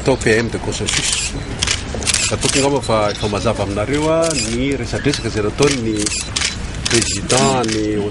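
A man speaking at length to reporters in Malagasy, his voice running on with only brief pauses.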